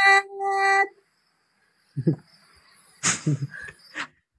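A man's voice holding a long, steady sung note, then a second shorter one on the same pitch, heard through the call's audio. After a pause of about a second come short voice sounds.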